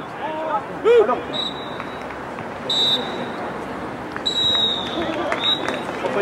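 A referee's whistle blown three times, two short blasts and then a longer one, with players shouting on the pitch, one loud shout about a second in.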